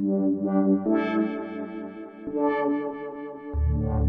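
Pioneer Toraiz AS-1 monophonic analog synthesizer playing single notes on its touch keys while the filter cutoff is turned. The notes change about a second in and again at about two and a half seconds, and a much lower bass note comes in near the end.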